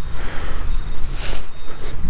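Wind buffeting the microphone in a steady low rumble, with a brief rustle about a second in.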